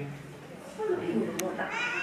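Chimpanzee vocalizing: a string of short, high, wavering calls in the second half.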